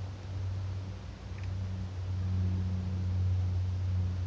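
A steady low electrical hum, with one faint tick about a second and a half in.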